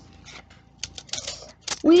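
A paper roll of pennies being torn open by hand, with light rustling and a scatter of short, sharp clicks as the coins begin to come out.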